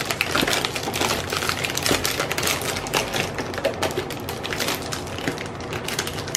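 Clear plastic wrap crinkling and crackling in a quick, continuous run of small clicks as a plastic-wrapped box is pulled up out of a paper gift bag.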